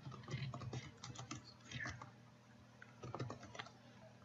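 Typing on a computer keyboard: a quick run of keystrokes in the first second and a half, a few more about two seconds in, then another short run about three seconds in.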